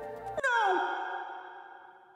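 A man's voice giving one more falling "no" with a heavy echo effect on it, about half a second in, its echo fading away over the next second and a half.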